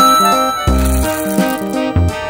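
Small candy-coated chocolates poured from a cup, rattling against each other as they spill onto a pile, mostly in the first second, over background music.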